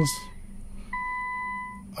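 Infiniti Q50's electronic warning chime: a steady, pure mid-pitched beep that stops under a second in and sounds again, after a brief gap, for almost a second.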